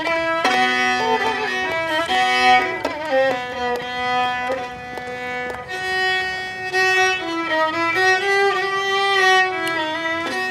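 Solo violin played live with the bow: long held notes, often two strings sounding at once, with a slide in pitch near the end.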